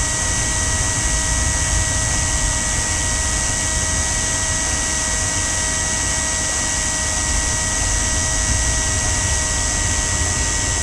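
Power drill running at a steady speed with a constant whine as a twist bit slowly drills into a snapped-off screw that held a pool cleaner's wheel.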